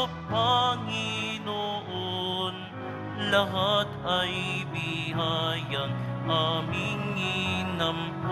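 Offertory hymn: sung phrases with marked vibrato over steady held accompaniment chords.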